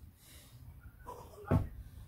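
One heavy thump about one and a half seconds in: a man's feet landing on artificial grass after jumping over a plastic stool.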